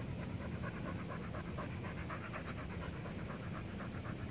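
A dog panting quickly and evenly, with a regular rhythm of several breaths a second.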